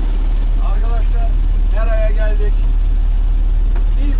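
A small fishing boat's engine running steadily under way, a loud low rumble heard from on board, with a voice speaking briefly twice over it.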